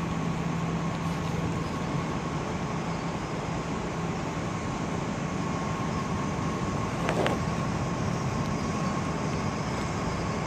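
Steady road-traffic noise with a constant low hum, and a brief louder sound about seven seconds in.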